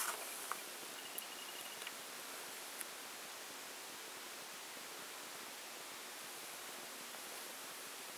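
Low, steady hiss of room tone and recording noise, with a few faint small clicks in the first three seconds.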